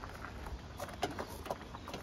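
A few soft, scattered taps and knocks over a low rumble.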